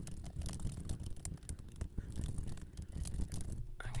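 Rapid typing on a computer keyboard: a dense, quick run of key clicks as a sentence is entered.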